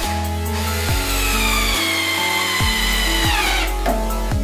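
Cordless drill-driver driving a screw into wood: a high motor whine that sinks slowly in pitch under load, then falls away as it stops about three and a half seconds in. Background music with a steady beat plays under it.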